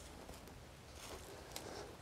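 Faint scraping and crunching of a spade being pushed into dry, grassy soil.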